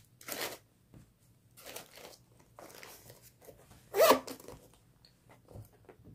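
Rustling, scraping and light knocks of small items and zippered pouches being packed back into a handbag, in a few short bursts with quiet between them. The loudest is a brief sharp scrape about four seconds in.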